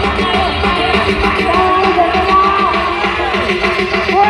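Loud music from a large outdoor pro-audio speaker-stack sound system, with a heavy bass, a steady quick beat and a sliding sustained melody line, picked up from inside the crowd.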